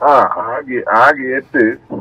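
Speech only: talk on a hands-free phone call, heard through the car's speakers.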